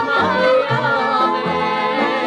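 A song: a voice with vibrato sings over instrumental accompaniment, with a bass line stepping from note to note.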